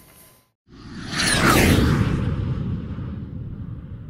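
Whoosh sound effect added in editing: a swell of rushing noise with sweeping tones, rising about a second in, then fading slowly into a long low rumbling tail.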